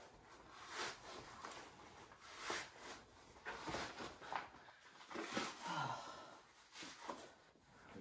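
Faint, irregular rustling and rubbing of a neoprene wetsuit being pulled on and tugged up at the waist.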